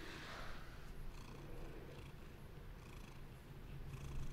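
Domestic cat purring faintly while being stroked by hand.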